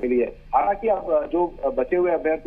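Speech only: a man talking without pause, over a narrow telephone line that cuts off the higher tones.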